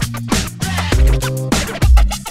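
Upbeat electronic background music with a heavy bass beat and record-scratch effects.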